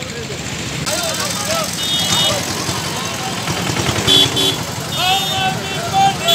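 Busy street traffic noise with scattered voices of a crowd. Short vehicle horn beeps sound about two seconds in and again about four seconds in.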